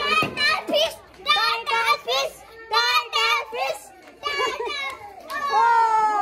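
A group of children shouting and cheering in short, high bursts. Near the end one long high shout falls slowly in pitch.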